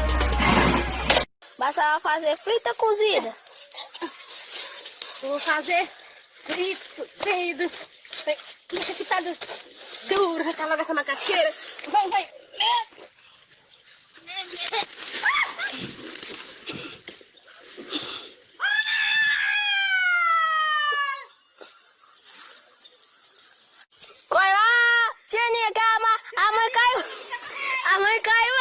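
People's voices exclaiming and screaming: a long scream falling in pitch about two-thirds of the way through, and loud repeated cries near the end.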